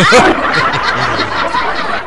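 Several people break into loud laughter all at once, many voices overlapping.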